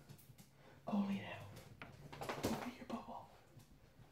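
Faint murmured speech: a few short, low utterances, too quiet to make out, with quiet gaps between them.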